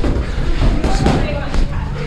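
Boxing sparring: a few sharp thuds of gloves landing, one near the start and another about a second in, over indistinct voices and a constant low rumble from the moving hat-mounted camera.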